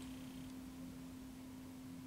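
A faint steady hum, one unchanging low tone, over quiet room tone.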